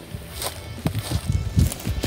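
Footsteps on dry grass and twigs: a few irregular soft thuds and clicks.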